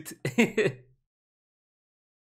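A man's brief laugh, a short voiced chuckle just after his words, before the sound cuts out.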